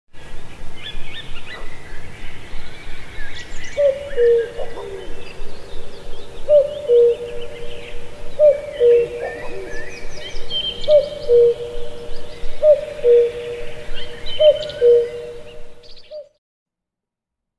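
Many small birds chirping and twittering, with a low two-note hooting call, the second note lower, repeated about every two seconds from about four seconds in. It cuts off suddenly at the end.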